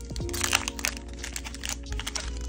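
Foil Pokémon booster pack wrapper being torn open and crinkled by hand: a quick run of sharp crackles. Background music with held tones plays underneath.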